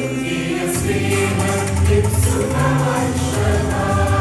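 Mixed choir of men and women singing a Malayalam devotional song in Mayamalavagowla raga, many voices holding sustained notes together over strong low notes.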